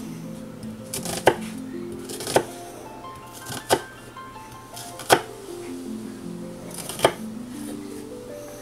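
Kitchen knife slicing down through a halved onion and tapping the wooden cutting board: about six sharp knocks a second or so apart, over background music.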